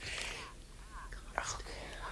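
Faint whispering with no full voice, and a single small click a little past halfway.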